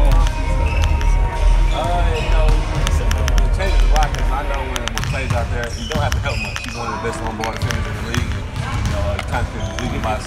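A man's voice answering questions close to the microphone, over basketballs bouncing on a gym floor and the hubbub of a crowded practice gym.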